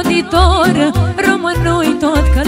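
Live Romanian party dance music: a woman sings an ornamented, wavering melody over accordion and keyboard, with a steady bass beat.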